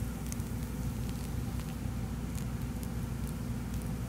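Orange Fanta poured from a can onto ice cream, the soda fizzing with faint scattered crackles, over a steady low background hum.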